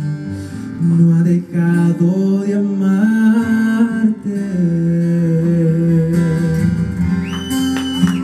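Male voice singing the long, held final notes of a romantic regional Mexican ballad over acoustic guitar accompaniment.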